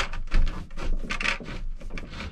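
Plastic-sheathed electrical cable rubbing and scraping as it is pulled and worked into a plastic electrical box on a wooden stud: a string of short, irregular scrapes.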